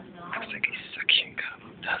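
A person whispering in short, breathy bursts.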